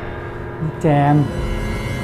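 A soft, steady background music bed with sustained tones, and a single word spoken about a second in.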